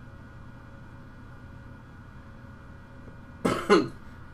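Faint steady room hiss, then near the end a man gives a single short cough, clearing his throat.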